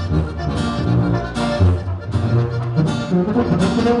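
Norteño band playing a corrido live, an instrumental passage with no singing: tuba walking the bass line under accordion and saxophone, with strummed guitar.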